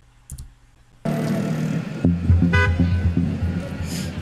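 Street noise starts suddenly about a second in, then a car passes close with its engine running. A car horn gives a short toot about halfway through.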